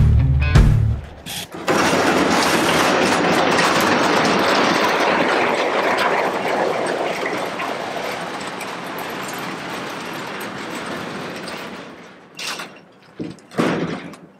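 Caster wheels of a wheeled body stand rolling and grinding over a gravel driveway as a bare car body is pushed along. The noise starts suddenly and fades gradually as the body moves away, followed near the end by a few crunching footsteps on the gravel.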